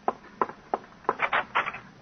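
Radio-drama sound effect on an old broadcast recording: about eight short, irregular knocks and clicks in two seconds.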